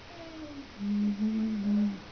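A person humming a tune: a soft falling note, then three louder held notes close together in pitch in the second half.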